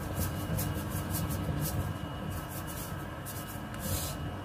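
A black ladle stirring a thick creamy soup in a stainless steel pot: a series of soft, irregular strokes over a steady low background.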